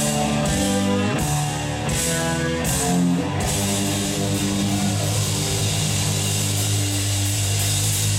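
Live rock band with electric guitars, bass and drum kit playing loud. For about the first three seconds the chords are struck in time with evenly spaced cymbal crashes, then a chord is held ringing over a cymbal wash.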